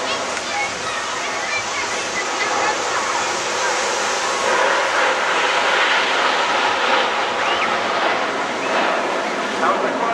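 Jet noise of the Red Arrows' BAE Hawk T1 formation flying overhead: a steady rushing roar that swells a little around the middle.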